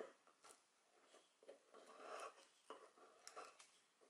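Faint soft scraping and a few light clicks of a wooden pestle mashing a boiled garlic clove into a paste in a small wooden mortar.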